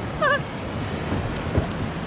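Wind buffeting the microphone over the wash of sea waves, with one short high-pitched call about a quarter of a second in.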